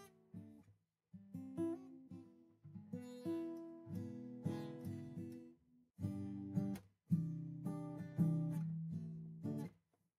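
Acoustic guitar strummed in chords, freshly tuned, played in a few short phrases with brief pauses between them.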